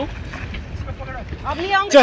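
Wind rumbling on the microphone while a swimmer splashes in the water beside a kayak, with a person's voice rising loudly near the end.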